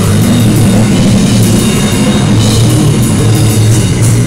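Live rock played loud on electric guitar and a Yamaha drum kit, with no bass guitar.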